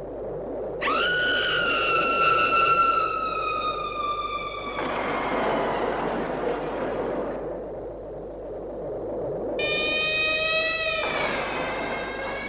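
Film sound effects: a steady drone with a sweeping, phased texture. Over it come two long, high, multi-toned wails, each sliding slowly down in pitch, the first starting about a second in and the second near the end.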